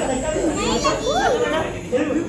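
Children playing and calling out, their high voices gliding up and down, with other people talking around them.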